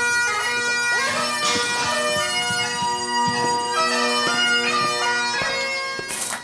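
Bagpipe music: a tune played over a steady drone, which breaks off suddenly at the end.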